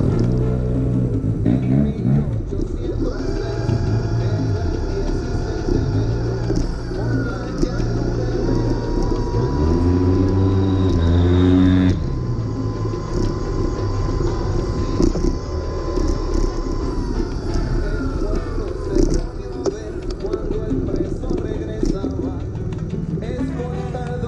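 Motorcycle and scooter engines in city traffic, running and passing close by; one revs up with a rising pitch about ten seconds in, cutting off abruptly near the middle.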